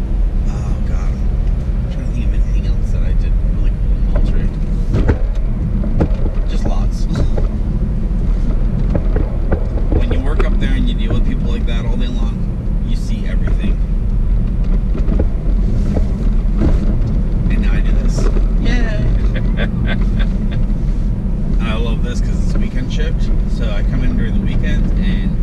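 Steady low road and engine rumble inside a moving car's cabin, with indistinct talking now and then.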